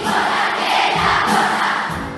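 A massed choir of hundreds of children shouting together in one sustained yell, which fades near the end.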